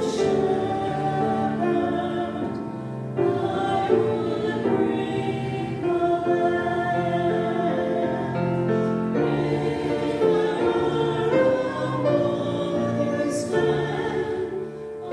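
Two women singing a song together into microphones, accompanied by a grand piano.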